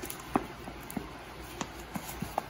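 Nitrile-gloved hands working the dry, stiff nose of a coyote pelt, giving a few faint, soft clicks and crinkles over a low steady hum.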